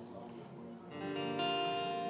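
A guitar chord strummed about a second in and left ringing, over a quiet sustained tone.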